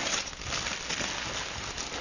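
Christmas wrapping paper rustling and crinkling as a wrapped gift box is handled and opened, a dense run of small crackles.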